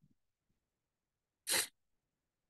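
A single short breathy puff from a person close to the microphone, about one and a half seconds in; otherwise near silence.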